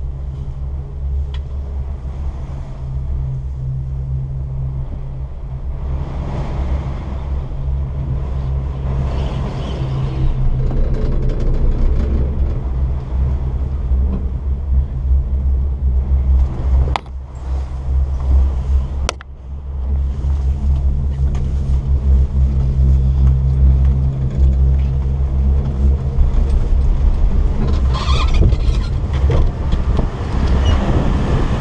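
Strong wind rumbling against a chairlift's closed bubble hood and the microphone, a loud, steady low rumble, with a couple of sharp clicks past the middle.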